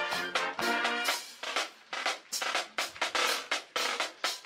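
Marching band music: short brass chords for about the first second, then a drum cadence of snare and bass drum strikes, several a second.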